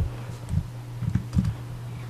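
A few irregular taps and clicks on a computer keyboard, over a steady low hum.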